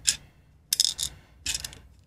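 Small sharp clicks and rattles from a plastic GPS mast mount and carbon tube being twisted and handled in the fingers, in three short bursts.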